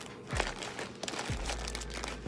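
Plastic packaging and shredded Easter basket grass crinkling as a wrapped tissue pack is pushed down into a plastic basket, with two dull thumps as it is handled.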